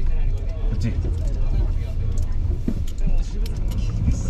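Low engine and road rumble inside a car's cabin as it drives slowly in the rain. Scattered light ticks of raindrops on the car body run over it.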